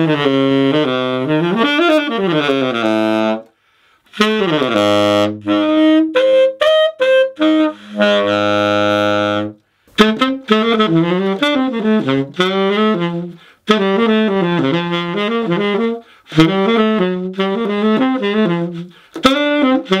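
Yanagisawa tenor saxophone with a SYOS mouthpiece, played in jazz phrases broken by short breaths: long held low notes in the first half, then quicker runs of notes.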